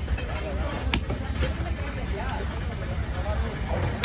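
Cleaver chopping through fish on a wooden chopping block: one sharp chop about a second in and another right at the end, over background voices and a steady low rumble.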